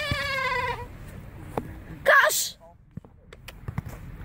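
A boy's voice holding one long cry for about a second, falling slightly in pitch, then a short loud shout about two seconds in. A few faint knocks follow.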